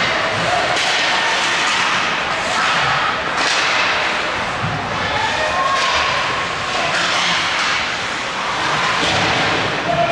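Ice hockey play on a rink: skate blades scraping the ice and sticks striking the puck and each other, in a run of sharp clicks and thuds, with players and spectators shouting.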